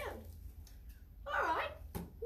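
Two short, high voice-like sounds: one falling away just at the start, and another about a second and a half in whose pitch dips and comes back up, over a steady low hum.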